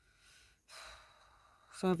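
A woman's audible sigh, a breathy rush of air that starts about two-thirds of a second in and trails off, before she starts speaking again near the end.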